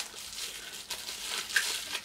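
Crinkly plastic wrapping being handled and pulled off a blush compact: a continuous, uneven crinkling with small crackles.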